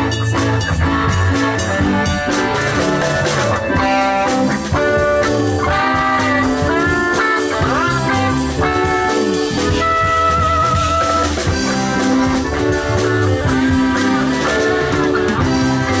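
Live rock band playing an instrumental jam: a lead guitar line with pitch bends and a wavering held note about ten seconds in, over bass, drum kit and keyboards.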